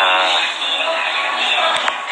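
A voice singing a short held line, its pitch wavering.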